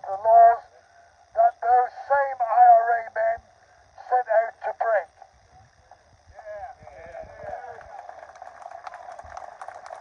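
A man's voice amplified through a handheld megaphone, tinny and narrow in tone, speaking in short phrases with pauses. For the last few seconds it gives way to a quieter, continuous mix of voices.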